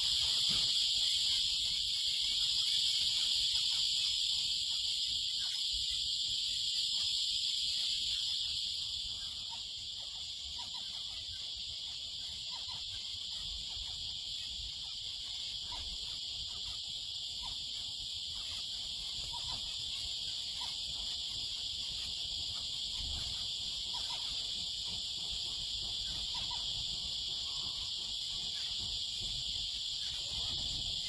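A steady, high-pitched insect chorus of the cricket kind, unbroken throughout, with faint short chirps every second or two from about a third of the way in.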